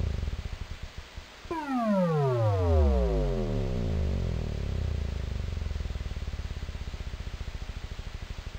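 The closing bars of a techno club mix: an electronic synthesizer tone sweeps steeply down in pitch about a second and a half in, then settles into a low drone that flutters quickly in loudness.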